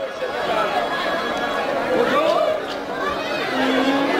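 Several voices talking over one another, like audience chatter. A held musical note comes in near the end.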